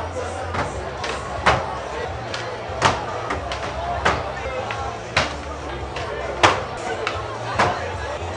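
Skateboards clacking on a smooth floor during flatground tricks: sharp snaps of tails popping and boards landing, about one a second, the loudest about six and a half seconds in. Crowd chatter and a low steady hum run underneath.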